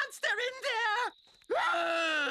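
Cartoon creature voices making wordless sounds: about a second of wavering, sing-song vocalising, a short pause, then one long call sliding down in pitch.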